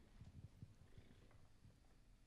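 Near silence: stage room tone with a few faint low bumps in the first second.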